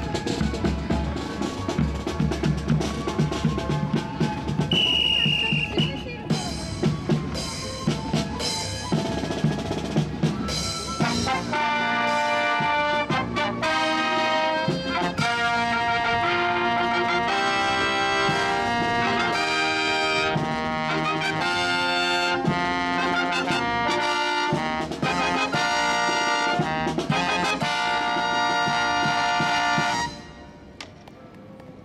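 Brass marching band playing live: for about the first ten seconds drums and percussion drive the beat, with a brief high whistle-like tone about five seconds in, then trumpets, trombones and sousaphone come in with a melody over the drums. The music stops sharply at the end.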